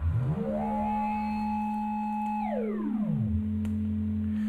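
Sine wave from a modular synthesizer run through the Make Noise Echophon's pitch shifter. A steady low tone sounds with a pitch-shifted copy that glides up about two octaves, holds, then slides back down below the original tone about three seconds in.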